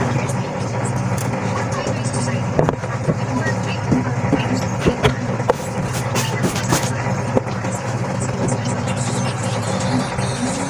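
Hands working inside a hamster cage: scattered clicks, knocks and rustles, most of them between about two and a half and seven and a half seconds in, over a steady low hum.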